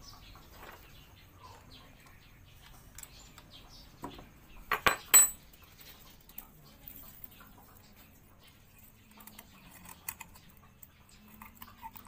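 Small metal hand tools clicking and clinking against a motorcycle engine's valve adjuster as the valve clearance is set and the lock nut tightened. Faint scattered ticks, with a few sharp metallic clicks about five seconds in.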